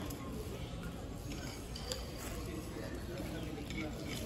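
Outdoor background rumble with faint, indistinct voices and a few light clicks.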